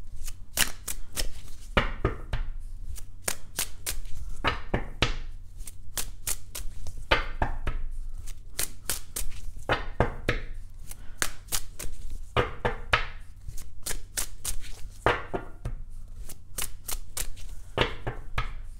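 A deck of tarot cards being shuffled by hand: a fast, irregular run of card clicks and slaps, several a second, with brief pauses, before more cards are drawn to clarify a spread.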